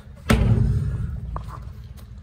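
A sudden thump about a third of a second in, followed by a low rumble that fades over about a second and a half, with a small click partway through.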